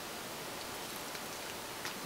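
Steady, faint hiss of background room noise with no distinct sound event.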